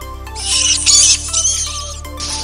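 Bat squeaks and chattering, high-pitched and warbling, starting about half a second in over steady background music.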